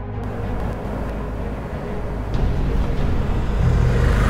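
Steady road and engine rumble heard from inside a moving car's cabin, getting a little louder near the end.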